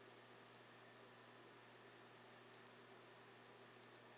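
Near silence with a faint steady hum, broken by a few faint computer mouse clicks.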